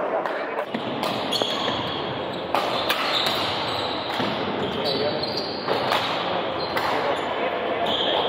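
Badminton rally on a wooden indoor court: several sharp racket hits on the shuttlecock about a second or two apart, with short high squeaks of players' shoes, over background voices echoing in a large hall.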